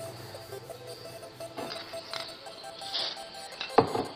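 Soft background music, with a few light handling knocks and one sharp click near the end as a lacquer-wet photo print is picked up off a wooden board.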